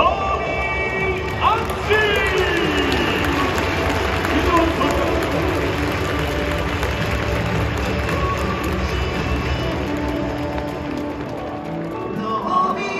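A pitcher's entrance music playing over a stadium's PA while a large crowd cheers and applauds.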